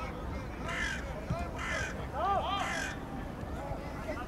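A crow cawing three times, about a second apart, harsh and rasping, with men's voices shouting in the background.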